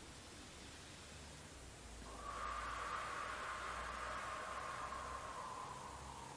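A woman's long exhale through the mouth, starting about two seconds in and fading near the end: the breath out that goes with lifting the leg in a pilates exercise on all fours.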